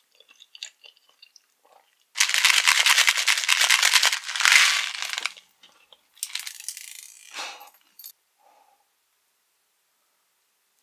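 Tiny hard Nerds candies rattling out of their box into a hand: a dense, loud rattle for about three seconds, then a few smaller rattles and rustles.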